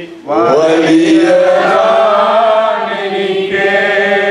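A man's voice singing a slow, chant-like worship song into a microphone, in long held notes, with a brief breath just after the start.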